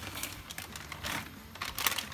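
Plastic bag of frozen mixed vegetables crinkling as it is shaken and tipped out over a pot, in irregular crackles with the sharpest near the end.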